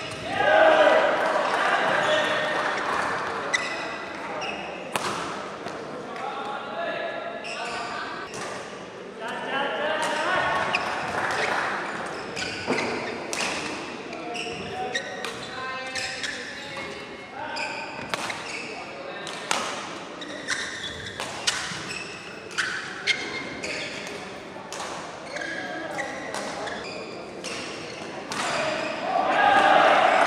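Badminton rally: rackets striking the shuttlecock in sharp repeated cracks, with players' shoes squeaking and thudding on the court mat. Voices call out and chatter between points, loudest at the start and near the end.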